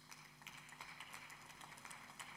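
Faint, scattered hand clapping from a few people, heard as light irregular claps over near silence.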